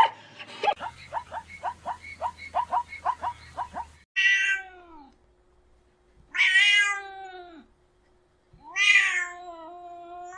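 A domestic cat meowing three times: long, drawn-out meows that fall in pitch at the end. Before them, through the first few seconds, a quick run of short animal calls comes about three a second.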